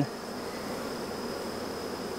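Many honeybees buzzing around an open hive: a steady, even hum.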